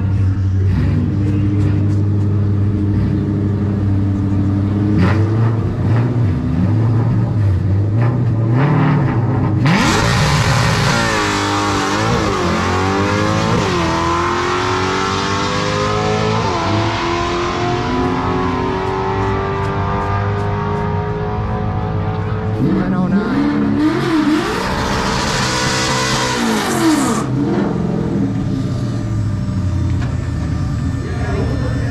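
Coyote-powered Fox-body Mustang drag car idling at the starting line, then launching about ten seconds in. Its V8 climbs in pitch with a few quick dips at the gear changes and then fades as the car runs away down the strip.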